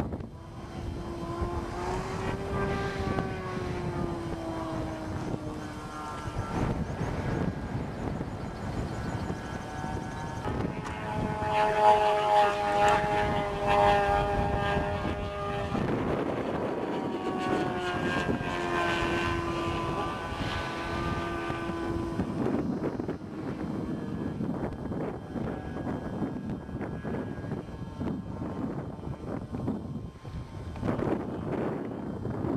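Engine of a radio-controlled model airplane flying overhead, its pitch rising and falling over several long passes and loudest about twelve seconds in.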